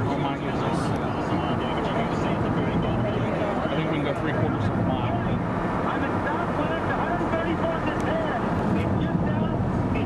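Steady road and wind noise of a car driving at speed, heard from inside the moving car.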